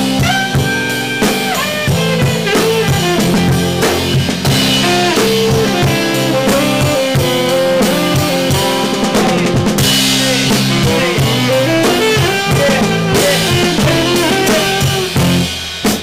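A jazz-punk band playing live as a full group: a drum kit driving the beat with snare and bass drum, under saxophone, electric guitar and bass guitar.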